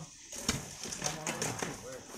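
Irregular knocks and scrapes of hand tools working packed sand and gravel, with faint voices in the background.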